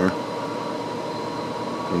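Steady background hum and hiss with a faint, unchanging high whine.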